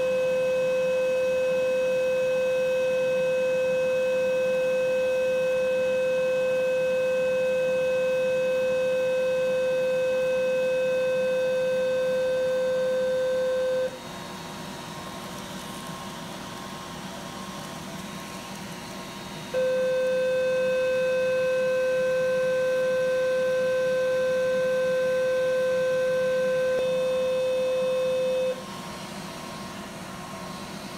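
Radiofrequency electrosurgical unit sounding its steady electronic activation tone while its wire-loop electrode is energized to cut away a mole. The tone runs for about fourteen seconds, stops for about five, then sounds again for about nine seconds.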